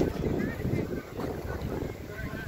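Wind buffeting the microphone in uneven low gusts, with faint voices of people around.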